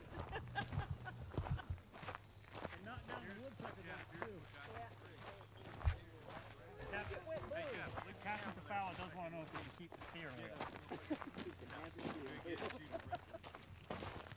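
Footsteps on a gravel road as several people walk, under faint, indistinct voices of people talking. One sharp thump stands out about six seconds in.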